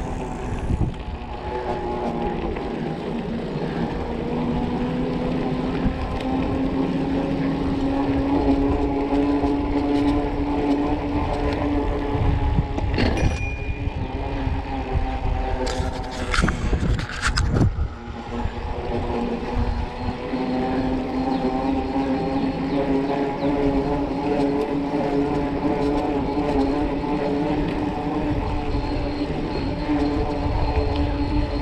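Bicycle rolling along at riding speed, with a steady hum that drifts slightly in pitch and wind rumbling on the microphone. Around the middle come a few sharp knocks and rattles.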